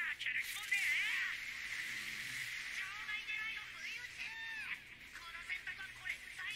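Anime character dialogue in Japanese over background music, the voices sounding thin and high-pitched.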